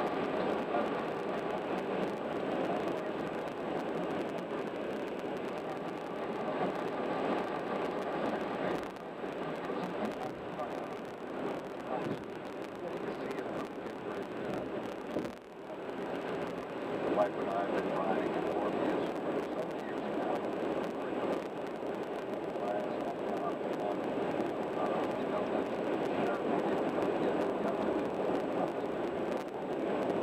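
Steady road and tyre noise heard from inside a car cruising at freeway speed, with a short dip in level about halfway through.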